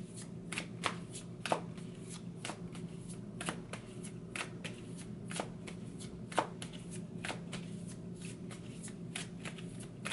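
A deck of cards shuffled by hand, overhand: an irregular run of card snaps and flicks, several a second, a few sharper than the rest.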